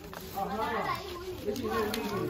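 Children's voices: high-pitched talking and calling out in two short bursts, over other children chattering in the background.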